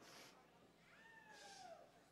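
Faint, high meow-like cry that falls steadily in pitch over about a second, after a brief hiss at the start, in a near-silent pause.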